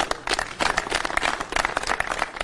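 Crowd applauding: many hands clapping in a dense, continuous patter.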